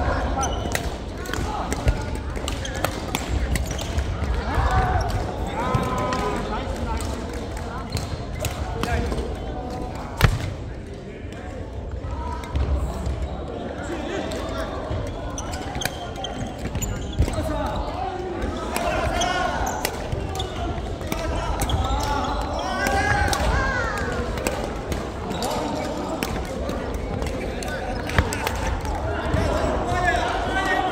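Badminton rackets striking a shuttlecock, with sharp clicks scattered through, the loudest about two, ten and twenty-eight seconds in. Footfalls thump on the wooden court, and voices echo in the large hall.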